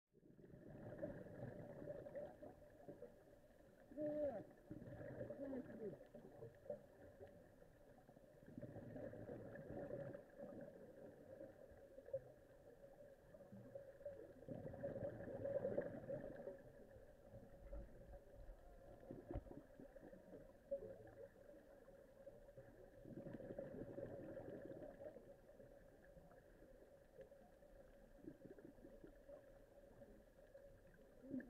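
Faint underwater sound from a camera in the sea: a steady hum holding two pitches, with water noise that swells and fades every few seconds.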